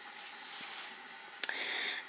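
Faint handling noise: a soft rustle of a felt keychain and hands being moved, then a single sharp click about one and a half seconds in.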